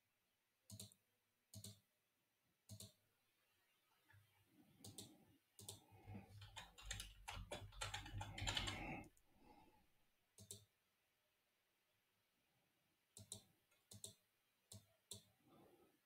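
Faint typing on a computer keyboard: a quick run of keystrokes from about five to nine seconds in, with a few single clicks before and after.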